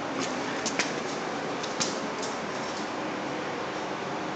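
A tennis ball knocking sharply several times in the first two seconds as it shoots out of an exhaust pipe and bounces across a concrete floor, over a steady rushing noise.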